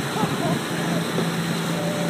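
Motorboat engine running at towing speed, a steady low drone under a haze of wind and wake-water noise.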